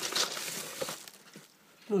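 Plastic bag crinkling and rustling as a hand rummages through it, dying away after about a second.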